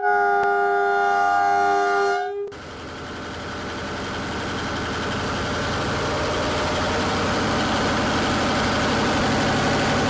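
A train horn sounds a steady multi-note chord for about two and a half seconds and stops, giving way to the rumble and rattle of a train passing that builds gradually louder.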